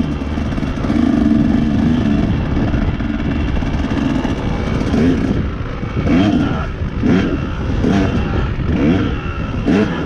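KTM dirt bike engine under way on a dirt trail: a steady note at first, then from about halfway the revs climb and drop again and again, about once a second, as the throttle is worked.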